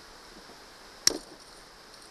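A single sharp click about a second in, from metal pliers working a lure's hook out of a fish's jaw.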